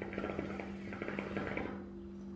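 Hookah water bubbling as a long draw is pulled through the hose: a rapid crackly gurgle lasting nearly two seconds, stopping shortly before the end.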